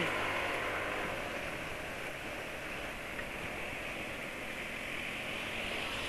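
Steady rush of wind and road noise with a low engine hum from a moving Yamaha scooter, cruising at a constant speed.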